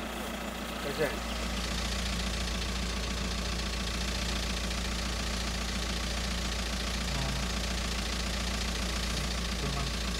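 Van engine idling steadily at close range.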